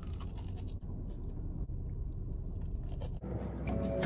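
Biting into and chewing a crispy breaded fried chicken tender: faint crunches over a steady low rumble. Background music comes in near the end.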